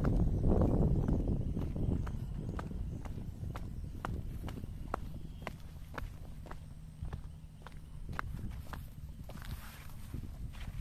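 Footsteps walking over bare rock and grass, about two steps a second, with a low rumble on the microphone that is loudest in the first two seconds.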